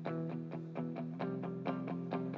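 Electric guitar played alone, picking single notes in an even pattern of about four notes a second.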